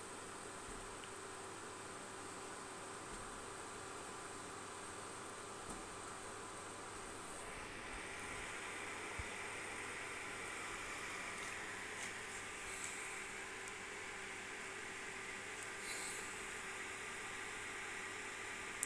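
Steady kitchen background noise: an even hiss with a faint hum and a thin high whine, growing a little brighter about halfway through, with a few faint ticks.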